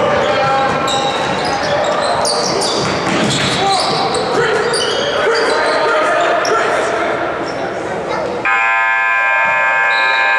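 Basketball game noise in a gym: crowd and player voices, shoe squeaks and a ball bouncing on the hardwood floor. About eight and a half seconds in, the scoreboard horn sounds suddenly with a steady buzz that holds on, signalling a stoppage in play.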